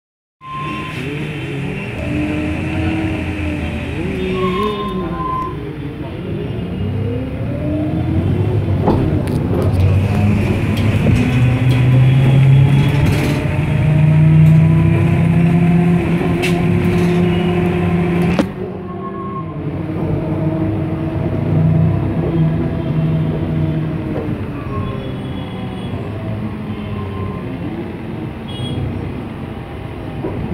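Engine and cabin noise of a city bus heard from inside while it drives through traffic, the engine note rising and falling with speed and gear changes. The sound drops suddenly about two-thirds of the way through.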